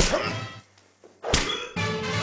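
Two sharp thuds about a second and a half apart, with music coming in just after the second.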